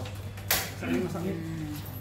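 A single sharp click from a portable gas stove being handled, about half a second in, followed by people talking.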